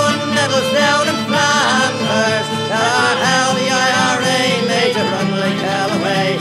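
Irish rebel folk song: the chorus being sung over a folk band's accompaniment.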